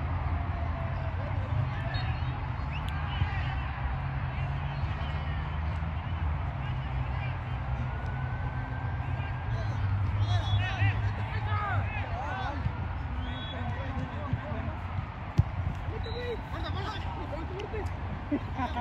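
Distant shouts and calls from soccer players across the pitch over a steady low rumble, with one sharp thump about fifteen seconds in.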